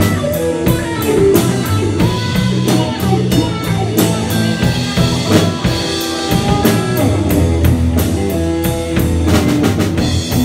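Live blues-rock band playing an instrumental passage: electric guitars and bass guitar over a drum kit keeping a steady beat, with no singing.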